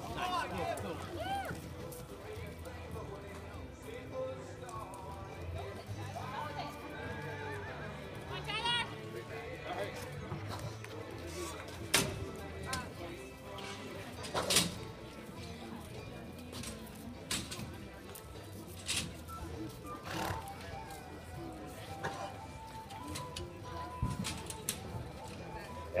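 A horse whinnies about nine seconds in, a falling series of calls. Around it are a sound system's announcer and music and a few sharp knocks.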